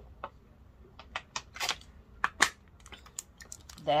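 Drinking from a thin plastic water bottle: a quick run of short crinkling clicks and swallows, the two loudest about one and a half and two and a half seconds in.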